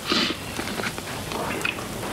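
Bacon sizzling in a frying pan, a steady hiss with scattered small crackling pops, and a brief louder rush of noise just after the start.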